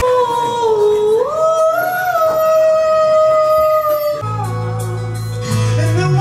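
Karaoke singing into a microphone over a backing track. One long high note is held for about four seconds and slides upward about a second in. When the note ends, the backing track's bass comes in.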